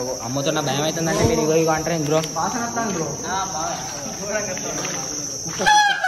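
Crickets chirping in a steady high-pitched trill, with men's voices talking over it and a short sharp call near the end.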